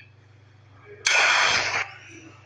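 Film sound effect of Iron Man's Infinity Stones snap: a sudden loud rushing burst of noise about a second in, lasting under a second and cutting off sharply.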